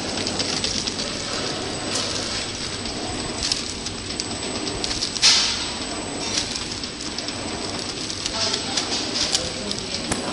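Horizontal flow pack wrapping machine running: a steady mechanical hiss and clatter with repeated clicks, a louder sharp burst about five seconds in, and a faint high-pitched whine throughout.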